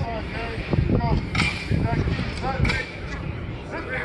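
Distant shouted voices of players and coaches on an open practice field, with two sharp impacts, one about a second and a half in and one near three seconds in.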